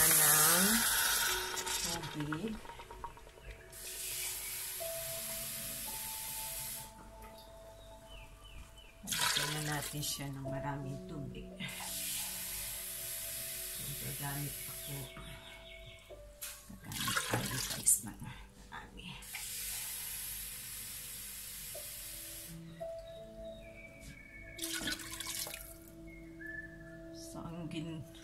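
Water poured from a jug into a hot pressure cooker pot where chicken was browning: a loud hiss of steam as it first hits, then several more pours of a few seconds each. Background music with held notes runs underneath.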